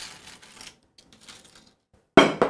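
Potato chips being set down on a slate serving board: faint, crisp rustling and clicking, a little louder at the start.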